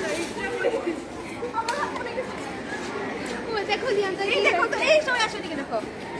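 Several girls' voices talking at once in indistinct chatter, busier in the second half.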